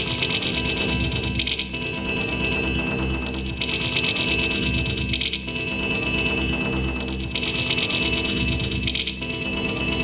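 Electronic music played live on an Elektron Digitakt drum computer and sampler: a looping pattern over a low, repeating part, with a steady high tone held above it and brighter swells every second or two.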